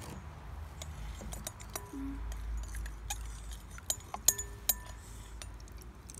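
A metal spoon stirring slime in a glass mixing bowl, clinking against the glass in a scatter of light ticks, with a couple of sharper clinks about four to five seconds in.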